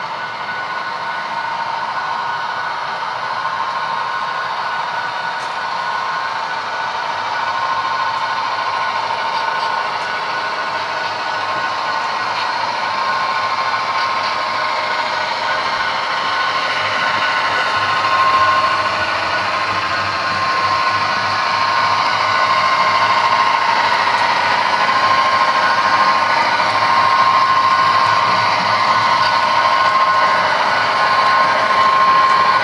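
HO scale model passenger train running along the track, a steady whir of wheels on rail and motor with a faint wavering whine, getting gradually louder as it comes closer.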